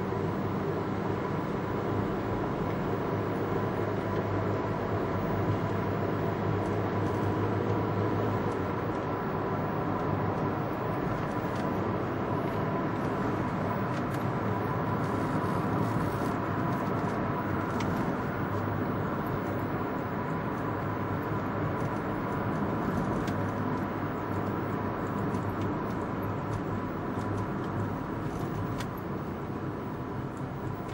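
Steady road and engine noise inside a moving car's cabin, with a faint steady tone running through it.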